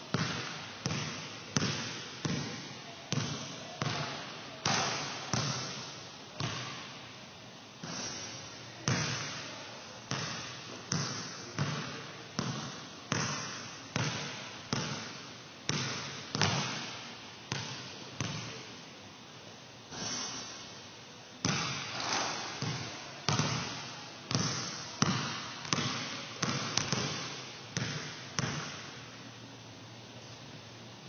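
Leather basketball bouncing on a gym floor and being shot at the hoop, about one to two sharp impacts a second, each with an echoing tail in the large hall. The impacts stop near the end.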